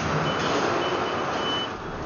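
Forklift truck's reversing alarm: a rapid run of short, high-pitched beeps, over the steady noise of factory machinery, stopping near the end.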